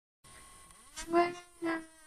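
Dead silence at first, then a person singing two held notes, the first sliding up into pitch about a second in and the second shorter near the end.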